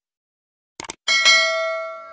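Two quick mouse-click sound effects a little under a second in, followed by a bright bell ding that rings on and slowly fades: the sound effects of a YouTube subscribe-and-notification-bell animation.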